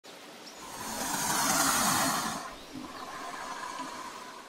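Intro sound effect for a logo reveal: a rushing swell of noise over a low rumble that builds to a peak about two seconds in, then eases off and fades away.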